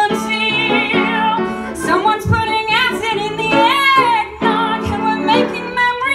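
A woman singing a comic Christmas song over instrumental accompaniment, with long held notes and some vibrato.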